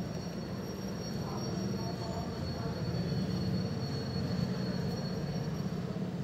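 Steady low background hum with two faint, steady high-pitched tones above it.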